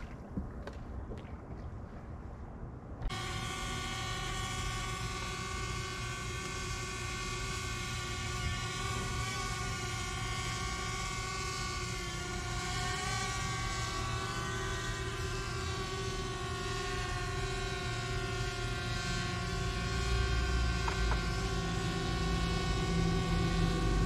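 Electric trolling motor on a bass boat whining steadily, its pitch wavering slightly now and then, over a low rumble that gets louder near the end. A quieter stretch with a few light clicks comes before the whine starts suddenly about three seconds in.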